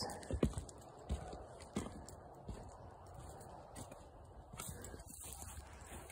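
Footsteps crossing a board laid as a bridge over a trench: a handful of short knocks in the first two and a half seconds, then only faint steps.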